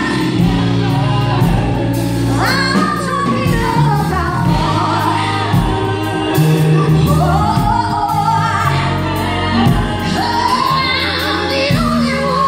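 Live R&B band performing: a woman sings lead into a microphone with backing singers, over electric guitar, bass guitar, drums and keyboard. Near the end she holds a long, wavering note.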